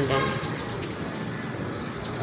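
A steady, even hiss of outdoor background noise, following the end of a spoken word at the very start.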